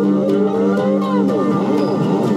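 Cigar box guitars playing over drums: a held low note under a lead line that slides up in pitch, then bends and wavers.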